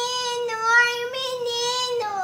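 A toddler's voice holding one long, steady high note, ending near the end.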